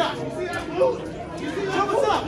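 Several voices talking and calling out over one another, crowd chatter in a large hall.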